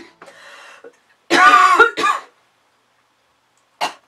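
A woman coughing and clearing her throat, set off by vinegar fumes: a loud cough about a second in, a shorter one right after it, and a brief one near the end.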